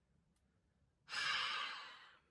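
A woman breathes out in a sigh close to the microphone about a second in, after a moment of near silence; the breath fades away over about a second.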